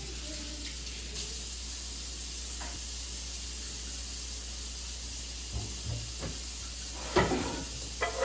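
Kitchen faucet running steadily into a stainless sink. Near the end come a few light knocks, then a louder clunk about seven seconds in.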